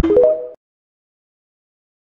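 TikTok end-card jingle: a few quick rising electronic notes over the tail of a deep bass hit, all over within the first half second.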